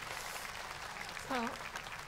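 Audience applause: a steady spread of clapping after a punchline, with a single short spoken word cutting in about a second and a half in.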